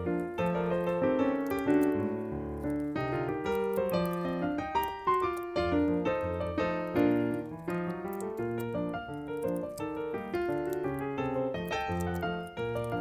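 Background piano music: a steady flow of notes, bass notes under a melody, with no speech.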